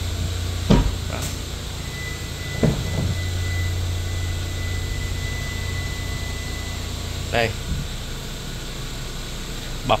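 Car doors being worked: a sharp thud, as of a door shutting, about a second in, then a softer knock near three seconds, over a steady low hum. A faint steady high tone sounds for about five seconds in the middle.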